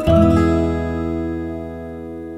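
The final chord of an acoustic pop song: a strummed acoustic guitar chord struck once at the start and left to ring, slowly fading away.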